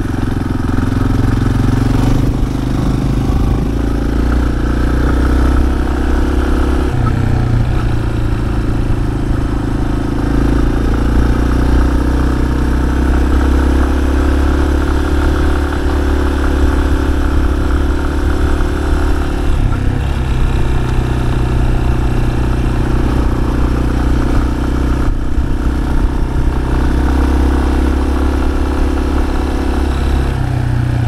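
Yamaha Serow 250's air-cooled single-cylinder four-stroke engine running steadily while the bike is under way, its note changing in steps a few times.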